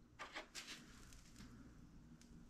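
Near silence: room tone, with a few faint clicks in the first second as small ball joint parts are handled.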